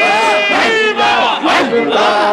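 A large crowd of men shouting a Sufi zikir (dhikr) chant together, many voices at once, in a loud rhythmic chant that swells about once a second.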